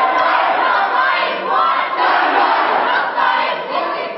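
A large crowd of young people shouting and cheering together, many voices at once.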